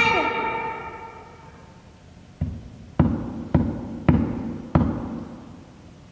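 A pitched tone fades away over about two seconds, then five dull knocks come roughly half a second apart, as of a hand knocking on wood.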